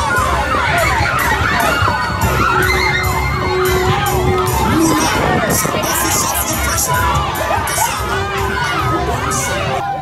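A crowd of children and young people shouting and cheering, many high voices overlapping at once. A steady held tone sounds twice in the background, once just after two seconds in and again near the end.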